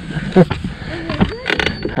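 A few sharp clicks and knocks from a baitcasting rod and reel being handled in a boat, with short vocal sounds between them.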